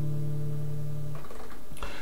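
Nylon-string classical guitar chord ringing out, then damped by the hand about a second in.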